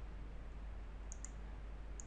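Two faint computer mouse clicks about a second in, with another click near the end, over a low steady hiss and hum.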